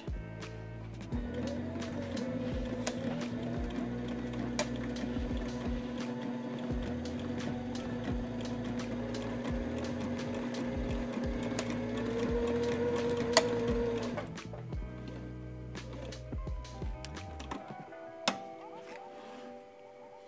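Sailrite Ultrafeed LSZ-1 walking-foot sewing machine stitching through folded layers of canvas, its motor running at a steady speed and stopping after about thirteen seconds. Background music plays under it.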